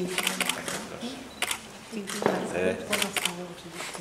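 Camera shutters clicking in short quick bursts several times, over voices.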